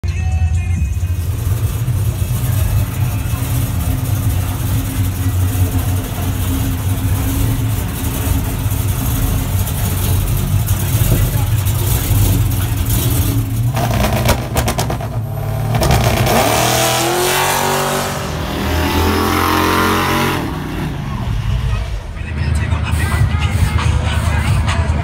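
Engine of a big-rim 1970s Chevrolet convertible 'donk' running with a steady deep rumble, with people's voices over it.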